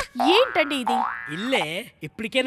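Comic cartoon-style sound effects with sliding pitch: a rising sweep early on, then a wobbling up-and-down boing-like glide near the end.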